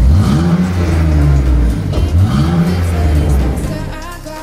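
BMW 325i's straight-six engine revved twice: the pitch climbs sharply, holds high, drops about two seconds in, climbs again and then dies away near the end.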